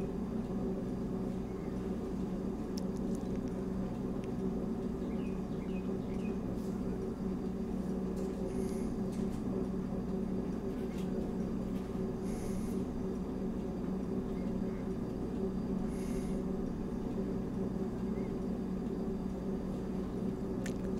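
Quiet room tone: a steady low hum, with three faint short hisses about a third, halfway and three quarters of the way through.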